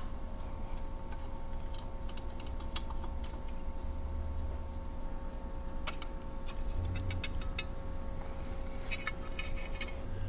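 Scattered small, sharp metallic clicks and ticks of hand tools and screws as the base of a Brother KE-430C bar-tacking machine is unscrewed, coming in quick clusters about six seconds in and again near the end, over a faint steady hum.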